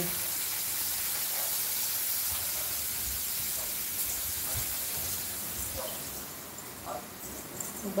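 Steady airy hiss from a running ceiling fan, with low rumbles of moving air and handling on the phone microphone about halfway through. The hiss fades in the last few seconds.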